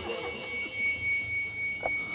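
A steady high-pitched whine over low background noise, with a brief voice-like sound near the end.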